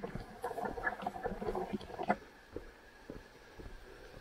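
Footsteps and the rustle of grass and undergrowth as a person walks along an overgrown forest trail: a quick run of light, irregular rustles and crunches for about two seconds, then fainter scattered steps.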